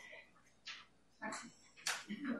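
Faint, brief murmured replies from audience members in a meeting room, with a sharp click near the end.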